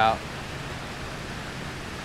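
Steady rush of water pouring over a low concrete spillway into the creek below.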